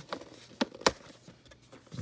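A cardboard trading-card box being handled as its lid flap is worked open: a few light clicks and taps, the sharpest a little under a second in.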